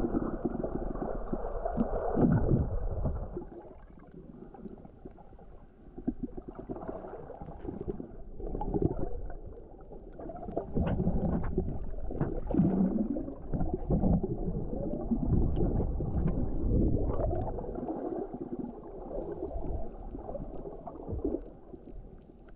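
Muffled underwater sound of water moving and gurgling around a submerged action camera, with scattered small clicks and loudness that swells and fades every few seconds.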